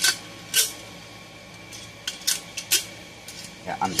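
A few short metallic clicks and clinks of small parts being handled as a muffler bolt is fitted to a chainsaw. The two loudest come near the start, about half a second apart, with fainter ones later.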